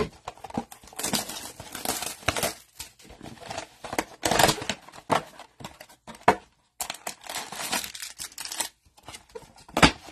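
Cardboard blaster box of 2022 Donruss Optic football cards being opened by hand: irregular tearing and rustling of the cardboard and foil card packs crinkling as they are handled and pulled out.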